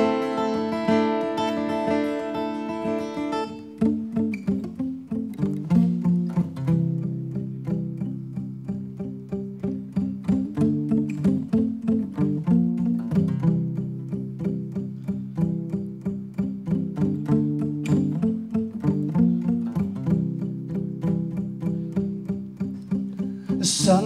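Acoustic guitar playing a song's instrumental intro: a chord left ringing for about four seconds, then a steady rhythm of picked notes.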